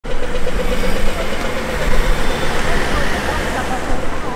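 Busy city street: car traffic running at an intersection, with voices of people walking nearby.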